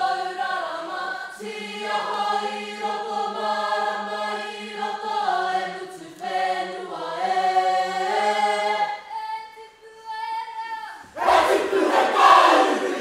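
Kapa haka group singing a waiata in unison and harmony, mixed voices holding long notes that change together every second or two; the singing thins and fades about nine to ten seconds in. About eleven seconds in, the group breaks into loud shouted chanting.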